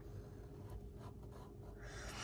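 Faint scratching of a fine-tip pen drawing lines on sketchbook paper.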